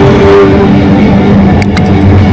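Amplified violin bowed through heavy effects, giving a loud, dense, gritty drone: a held note near the start, then a few sharp clicks near the end.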